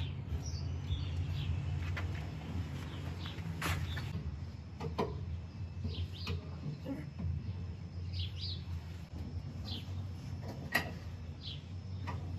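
Songbirds chirping in short, scattered calls over a steady low hum, with two sharp metallic clicks, one about four seconds in and one near the end.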